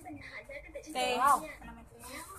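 A single short voice-like call about a second in, rising and then falling in pitch, over faint background noise.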